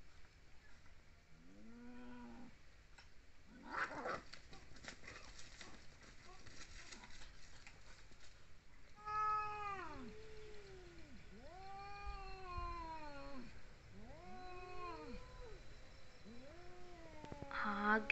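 Two tabby cats in a fight standoff, yowling: long drawn-out caterwauls that rise and fall, one after another and overlapping, from about nine seconds in. Before that, a short yowl and a stretch of harsh spitting and hissing.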